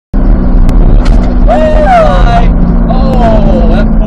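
Inside a C8 Corvette's cabin at road speed: a loud, steady engine drone with road noise, and voices exclaiming twice partway through.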